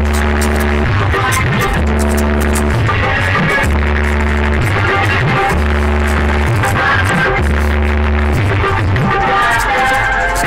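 Loud electronic dance music played through stacked DJ speaker cabinets, driven by a heavy bass note that sounds for about a second and repeats about every two seconds.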